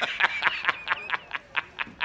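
J. Jonah Jameson's meme laugh: a man's loud, hearty laughter broken into a rapid string of short 'ha' bursts, about five or six a second, slowing and growing fainter toward the end.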